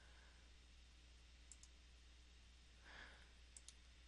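Near silence with a few faint computer mouse clicks, a pair about one and a half seconds in and another near the end.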